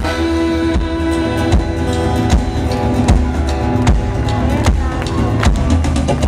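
Live folk-rock band playing an instrumental break between verses: strummed acoustic guitar and drum kit under a sustained melody line, with a steady beat landing about every 0.8 s.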